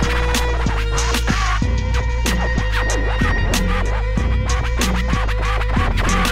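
Instrumental hip hop beat, a steady bass line and regular drum hits, with DJ turntable scratching laid over it.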